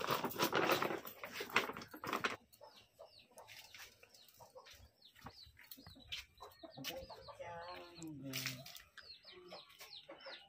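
A plastic bag rustling for the first two seconds or so, then domestic chickens clucking with short, repeated calls.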